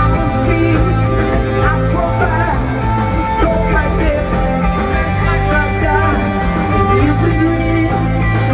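Live rock band playing: electric guitar, bass guitar and drums, with a singer's voice over them, at concert volume in a large arena.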